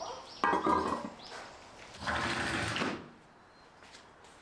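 A white wire slipper rack being set down on tiled paving: a sharp clatter about half a second in, then a second, longer scraping noise around two seconds in.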